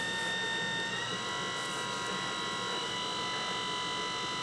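Electric potter's wheel motor whining steadily under a lump of wet clay being coned up during centering; the whine steps up slightly in pitch about a second in.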